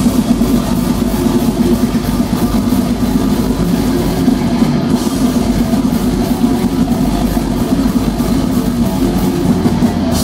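Metal band playing live and loud: distorted electric guitars over a drum kit beating fast and without a break.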